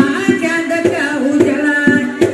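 A woman singing buraanbur, Somali women's sung poetry, into a microphone in long, gliding held notes, with hand claps and drum strokes about every half second keeping the beat.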